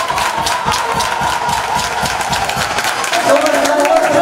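A congregation clapping in a steady rhythm, about four to five claps a second, with crowd voices. A sung line begins about three seconds in.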